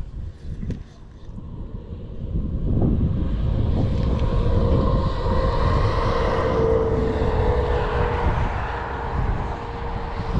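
An engine drone that swells in over about two seconds and then holds steady with a slowly wavering pitch, over wind rumble on the microphone.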